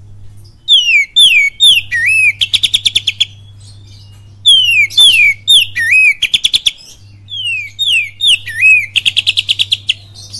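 Oriental magpie-robin singing the same loud phrase three times: a few downward-sliding whistles followed by a fast, even trill of about ten notes a second. The song is a kapas tembak imitation in the bird's repertoire.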